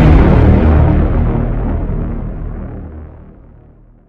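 Intro logo sound effect: the tail of a deep cinematic boom, a low rumble that fades steadily and dies away near the end.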